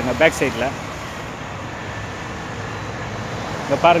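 Steady noise of distant road traffic between short bits of a man's speech at the start and near the end.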